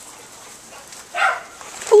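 A dog gives one short bark about a second in.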